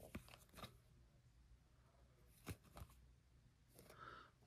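Near silence with a few faint clicks and slides of glossy trading cards being flipped through by hand, a few near the start and two more about two and a half seconds in.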